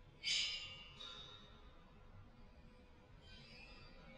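Chinese chao gong sounded with a new technique: a sudden bright, shimmering metallic ring about a quarter second in that fades over about a second, over a faint steady hum from the gong. A weaker swell of the same shimmer rises near the end.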